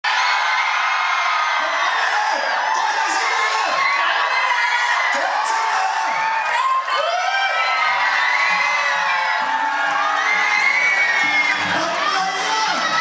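A large indoor crowd of fans chattering, with many high-pitched whoops and shrieks over one another. About two-thirds of the way through, music with steady low notes starts up underneath.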